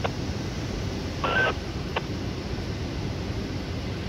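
Steady outdoor background noise, with a few faint clicks and one short electronic beep a little over a second in.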